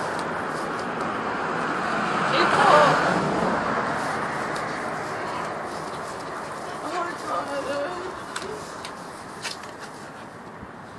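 Street traffic: a vehicle passing, swelling to its loudest about three seconds in and then fading away.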